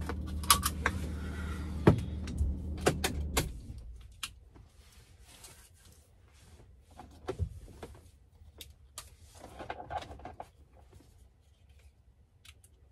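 Van engine idling with a low hum for about the first four seconds, then going quiet as it is switched off. Sharp clicks and rustles of handling things in the driver's seat follow, scattered through the rest.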